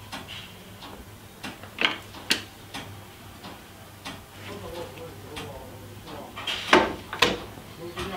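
Levers of a mechanical signal-box lever frame being thrown, with sharp metallic clacks of catches and handles. Two clacks come about two seconds in, and the two loudest follow each other about half a second apart near the end.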